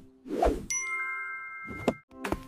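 A cartoon sound effect: a short swish, then a bright ding that rings on with several high tones for over a second.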